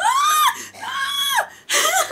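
A woman's high-pitched distressed whimpering cries: two wails that each rise and fall, then a short breathy gasp near the end.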